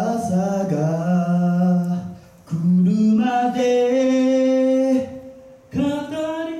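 Male a cappella group singing in close harmony, holding two long sustained chords of about two seconds each with a short break between, then starting a third just before the end.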